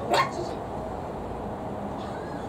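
A Maltese puppy gives one short, sharp bark just after the start.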